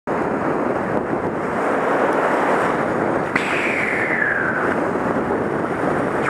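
Surf washing over a rocky shoreline, with wind buffeting the microphone. About three seconds in, a click is followed by a thin whine that falls in pitch for about a second.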